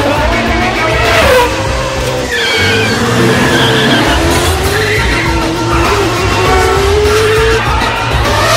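Open-wheel race car engines revving high, their pitch rising and falling as they change speed and gear, over background music with a heavy beat.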